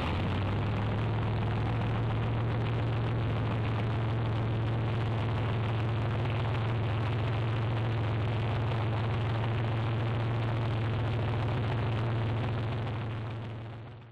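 Loud, steady engine noise holding one constant low pitch over a rough haze, fading out over the last couple of seconds.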